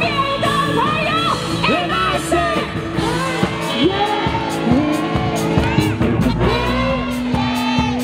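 Live pop song through a stage PA: amplified singing over a band with drums, held notes and melodic vocal lines carrying on without a break.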